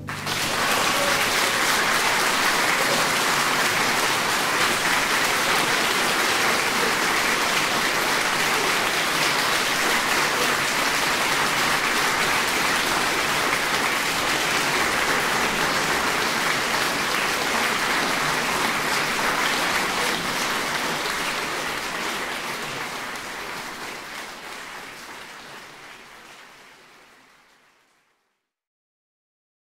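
Audience applauding steadily, then fading away over the last several seconds.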